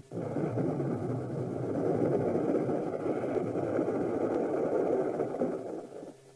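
A steady rumbling, rushing sound effect on an old film soundtrack. It starts abruptly, swells slightly and cuts off near the end.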